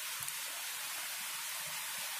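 A steady, even high hiss with no other sound standing out: background noise of the recording.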